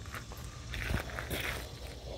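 Faint scuffling and scraping in a few short bursts, about halfway through and again near the end.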